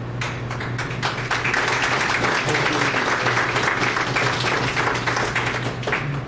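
Audience applauding: a few scattered claps at first, quickly filling into steady applause that stops near the end.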